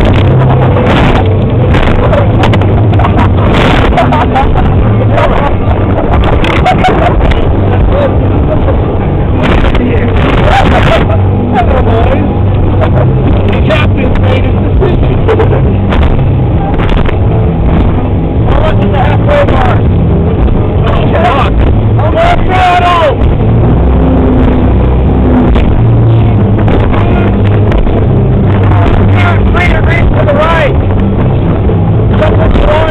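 Powerboat engine running loud and steady while the boat is underway, with indistinct voices over the drone.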